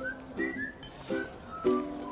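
Background music: light plucked string chords about twice a second under a high, sliding, whistle-like melody.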